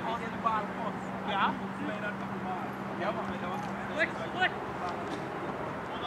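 Indistinct shouts and calls from soccer players on the field during play, over steady outdoor background noise. A steady low hum runs under them and fades out past the middle.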